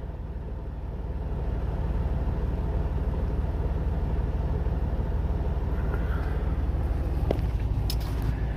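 Semi truck's diesel engine idling, a steady low rumble heard inside the cab, growing a little louder over the first two seconds. A couple of faint clicks near the end.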